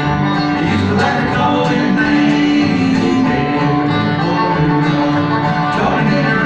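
Bluegrass band playing live, with an upright bass plucking a moving low line under banjo picking.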